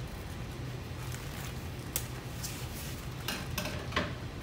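Construction paper being handled as a new sheet is fetched: a few light rustles and clicks, mostly in the second half, over a steady low room hum.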